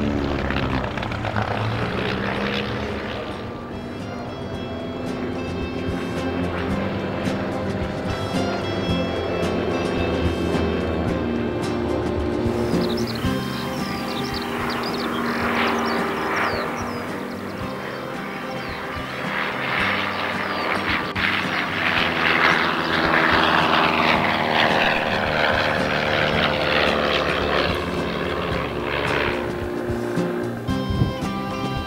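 A de Havilland Canada DHC-1 Chipmunk's 145 hp de Havilland Gipsy engine and propeller in aerobatic flight, mixed with background music. The engine sound grows louder in the second half, its pitch sweeping up and down as the aircraft passes.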